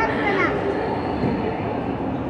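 A train running, a steady rumbling noise, with people's voices over it.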